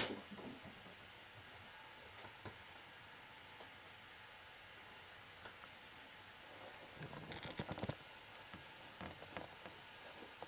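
Faint steady hiss of indoor room tone, with a click at the very start and a short cluster of rustling and knocking about seven seconds in.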